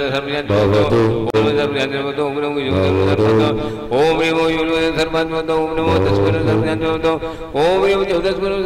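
A man's voice chanting a Jain mantra into a microphone in long, drawn-out held notes, each note opening with an upward slide in pitch.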